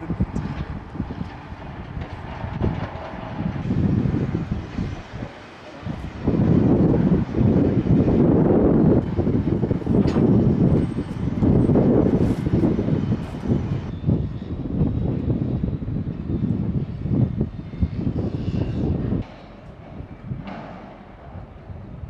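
Construction-site noise: a rough low rumble of machinery, loudest through the middle and falling away suddenly near the end.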